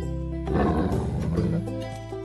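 A dinosaur roar sound effect, the loudest thing here, lasting about a second from about half a second in, over background music.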